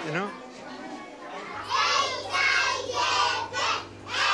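A roomful of young children calling out together in chorus, in loud rhythmic phrases, starting about one and a half seconds in over a steady low hum. Just before, a man's voice is heard briefly at the start.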